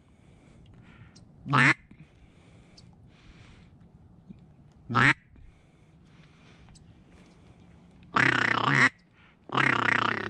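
Duck call blown close by in single quacks about a second and a half in and again at five seconds, then two longer runs of calling near the end, to bring incoming ducks in to the decoys.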